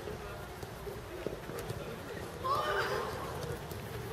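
A few sharp thuds of a football being kicked under distant players' voices, with a loud, rising, high-pitched shout about two and a half seconds in.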